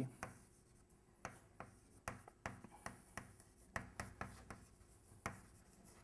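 Chalk writing on a blackboard: a string of faint, irregular short taps and scratches as words are chalked up.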